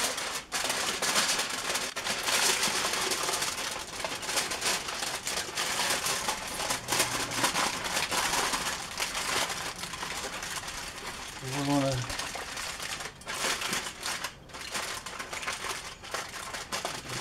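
Aluminium foil crinkling and crumpling continuously as it is folded and pressed tightly by hand around a rack of ribs.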